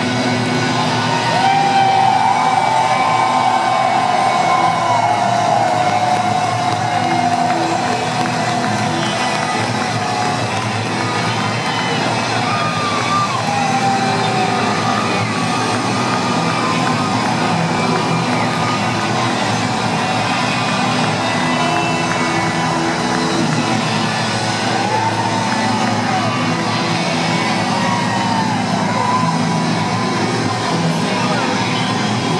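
Live rock band playing through a stadium sound system, heard from the audience, with a large crowd cheering over it.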